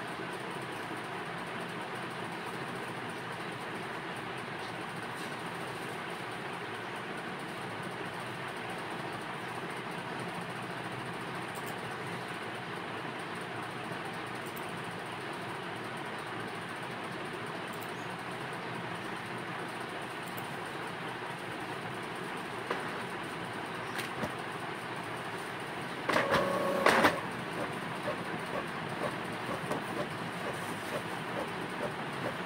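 Steady background noise throughout, with a few soft clicks and a short burst of handling noise near the end as sheets of paper are moved about on a desk.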